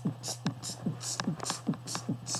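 Beatboxed techno beat made with the mouth closed: throat bass kicks, each a short downward-swooping thump, about two and a half a second, with a hissing hi-hat on each offbeat. A steady low hum runs underneath.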